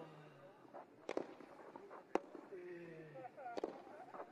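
Tennis rackets striking the ball in a baseline rally on a grass court: three sharp hits, one to one and a half seconds apart.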